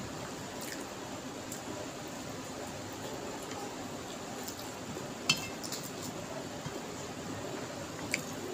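Fingers mixing rice with mutton curry on a steel plate, with mouth-full chewing: soft wet squishes and a few light clicks, with one sharper clink about five seconds in.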